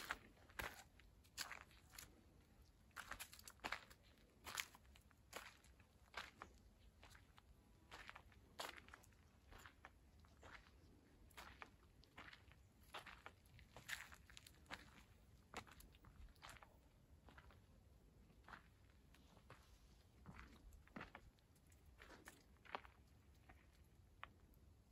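Quiet footsteps crunching on a dry dirt and gravel trail, an irregular step about once or twice a second.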